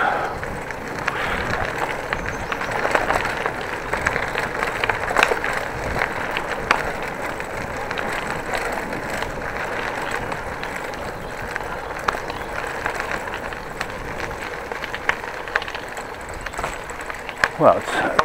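Bicycle rolling along a narrow gravel path: steady tyre noise on the grit, with scattered small clicks and rattles from the bike.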